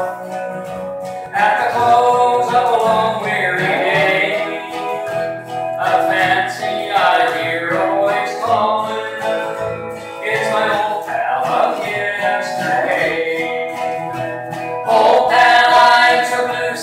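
Live country band playing, with strummed acoustic guitar and upright bass under a gliding lead melody.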